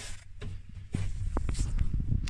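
Handling noise on the camera microphone: a low rumble with scattered clicks and knocks as the camera is moved and brushes against fabric.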